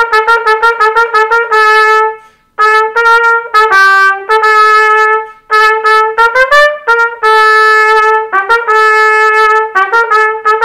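Solo trumpet playing the lower part of a duet in E-flat, a line of separate notes, some short and some held, mostly in the middle register. The playing stops briefly about two seconds in for a breath, and dips once more shortly past the middle.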